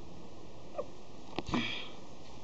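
A sharp click followed straight away by a short sniff through the nose, over a steady low hiss.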